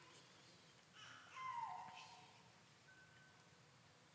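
Near silence: quiet room tone in a hall, with a faint, brief sound about a second in.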